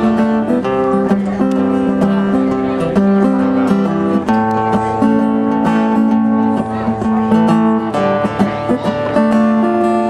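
Acoustic guitar strumming a steady run of chords, the notes changing about once a second.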